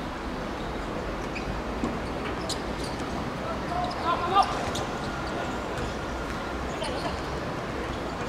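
Sounds of an amateur football game in play: a few sharp ball strikes, the loudest about four and a half seconds in, and distant calls from players over a steady low background hum.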